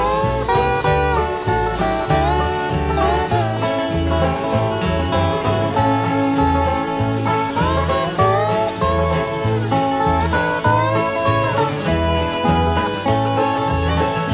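Acoustic country-bluegrass string band playing an instrumental passage: a lead line that slides and bends between notes over guitar and banjo, with a bass note on each beat.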